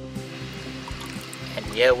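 Steady running water as a drinking glass is dipped into a swimming-pool skimmer to fill it, under soft background music. A man's voice comes in near the end.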